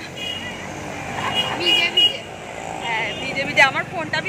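Road traffic running along a wet street, with people talking over it.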